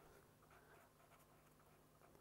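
Near silence: very faint scratching of a pen writing on paper, over a faint steady low hum.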